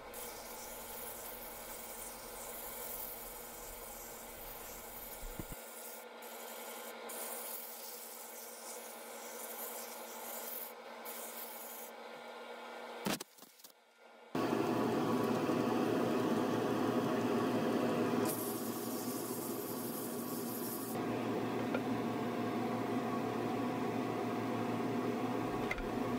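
80-grit sandpaper rubbing by hand against a mesquite bowl spinning on a Laguna 18|36 wood lathe, over the lathe motor's steady hum. About 13 seconds in it cuts off after a click and goes nearly silent for a second, then a louder steady rushing noise follows.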